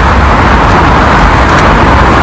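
Steady road traffic noise, an even wash with a low rumble beneath.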